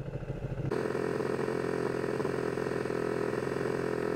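Ducati 1299 Panigale's L-twin idling at a standstill, a steady low rumble. About a second in, a steady hiss with a constant whir joins it and holds.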